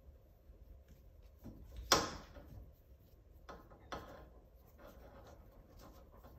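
Climbing rope and hitch cord rubbing and rustling as they are handled by hand to tie a McGovern friction hitch. A sharp snap or knock just under two seconds in is the loudest sound, with two smaller knocks about a second and a half later.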